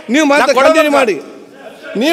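A man speaking, with a short pause just over a second in before he carries on.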